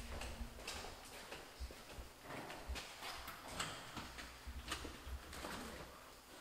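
Footsteps walking along a hallway, faint and irregular at about one or two steps a second, over a low rumble from the hand-held camera moving.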